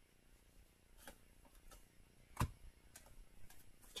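Faint, scattered clicks and snaps of trading cards being flipped through by hand, the loudest about halfway through.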